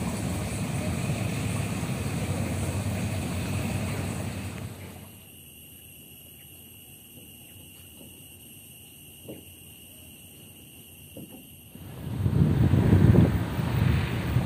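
Wind rumbling on the microphone. About five seconds in it drops away to a quiet stretch with only faint, steady high-pitched tones and a few faint ticks, and the rumble returns near the end.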